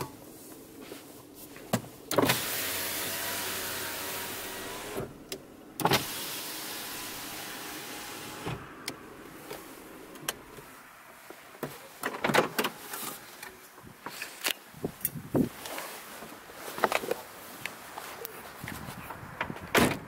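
A car's electric window motors running as the windows are lowered, each run starting with a click: a steady run of about three seconds, then a second one that fades out after about four. These windows have become sluggish in their tracks. Scattered clicks and knocks follow.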